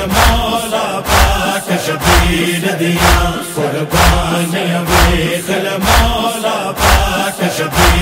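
Noha interlude: voices chanting a held, wordless-sounding line over a steady percussive beat, with a sharp strike about once a second and heavy low thumps in between.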